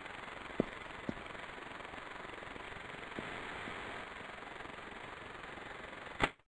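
Logo ident sound effect: a steady whirring hiss with a few scattered clicks, cut off by a sharp click near the end.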